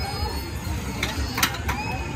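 Amusement-park ride running, with a steady low rumble and faint children's voices, and three sharp clacks in quick succession about a second in, the middle one loudest.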